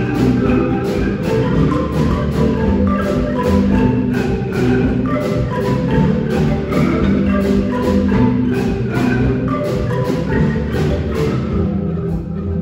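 A marimba ensemble of many wooden-keyed marimbas, bass marimbas included, playing a song together in a steady, rhythmic pattern of mallet strikes.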